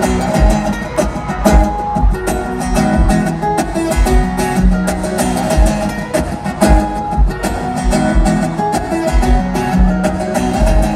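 Live acoustic guitar strummed in a song intro over a steady beat of low thumps, through a concert sound system.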